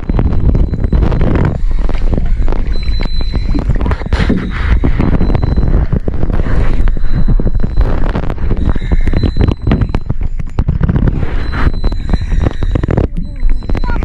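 Sea water sloshing and slapping against an action camera held at the surface, a loud steady low rumble broken by many small knocks.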